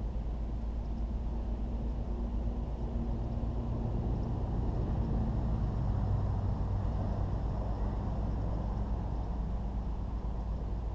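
Steady low rumble of distant engine noise, with a faint hum that swells a little around the middle.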